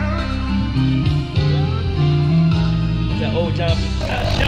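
Electric keyboard playing held chords over a moving bass line, with a voice singing briefly near the end.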